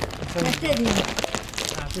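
A plastic carrier bag crinkling and rustling as it is handled and passed between hands, under people talking.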